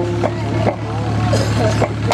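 Speech: stage dialogue through a public-address system, with a steady low hum underneath.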